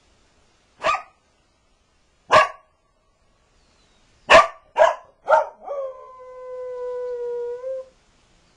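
Border collie giving five short barks, the last three close together, then one long howl held at a steady pitch near the end.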